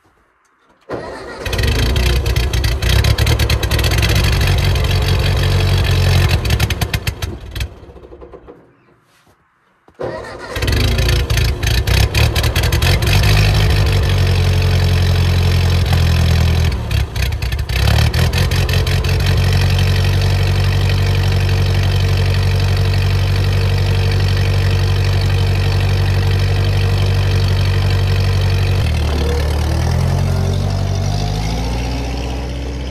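Old farm tractor's engine starts about a second in, runs for several seconds, then fades and dies. About ten seconds in it starts again and keeps running steadily, with a short dip about halfway through.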